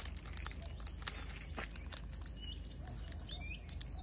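Birds chirping in short up-and-down calls from about halfway in, over a steady low background hum, with a few small clicks early on.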